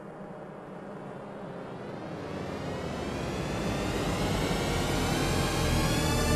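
Synthesized intro swell: a dense drone that grows steadily louder, its tones gliding upward in pitch as it builds into the opening music.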